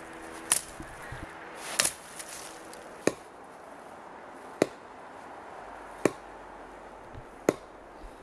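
Axe chopping into wood: six sharp strikes, one about every one and a half seconds.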